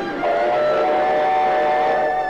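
Train horn sounding one steady blast of about two seconds, starting a moment in.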